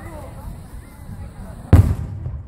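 A single loud firework boom near the end, deep and sudden with a brief rumble after it, over faint voices of the watching crowd.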